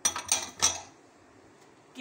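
A quick run of three or four clinks and knocks from a plastic blender jar being handled on its base, all within the first second.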